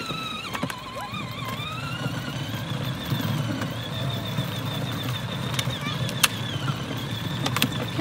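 Battery-powered ride-on toy truck driving along a concrete sidewalk: a thin, slightly wavering whine from its electric motors and gearboxes over a steady rumble of plastic wheels rolling on the concrete, with a sharp click about six seconds in.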